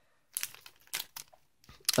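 A few faint crinkles and ticks of something being handled, scattered through an otherwise quiet pause.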